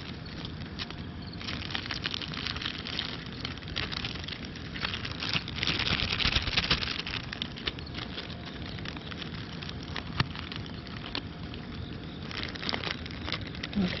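Clear plastic bags crinkling and rustling as they are handled and unwrapped. The crackle runs in irregular bursts and is loudest around the middle.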